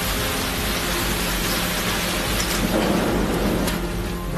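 Heavy rain in strong wind: a dense, steady rush of downpour noise with a low rumble underneath.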